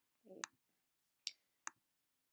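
Three faint, short clicks from a computer's pointer button, under a second apart, as files and menus are clicked on screen.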